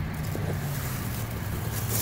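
A sponge rubbed back and forth over the flour-dusted face of a flat stone headstone, over a steady low hum.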